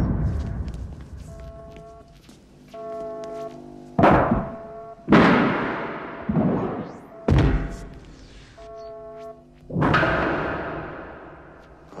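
Dramatic film score: held brass-like chords broken by about five heavy booming hits, each ringing away over a second or two. A short laugh comes at the very end.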